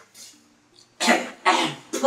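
A man coughing: three harsh coughs in quick succession, about half a second apart, starting about a second in.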